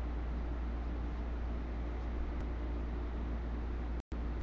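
Steady low hum with an even hiss over it: background room noise picked up by a webcam microphone, with no distinct event.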